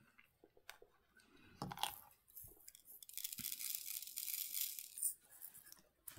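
Small resin diamond-painting drills poured from a little storage pot into a plastic tray, heard as a soft, high rattling hiss lasting about two seconds. Before it come a few light clicks and taps as the pot is handled.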